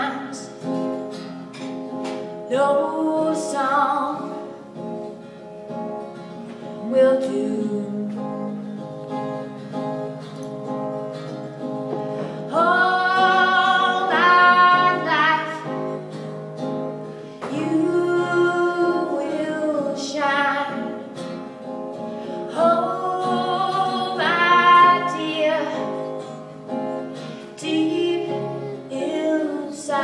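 A woman singing a slow song to her own acoustic guitar, the guitar chords ringing on between her sung phrases.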